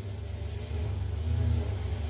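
A low, steady background rumble that swells slightly about a second in.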